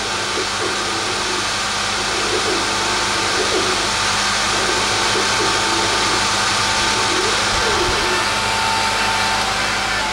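Laser cutter running a cut through a sheet of acrylic: a steady rushing of air from the machine, with a faint whine that wavers in pitch as the cutting head moves.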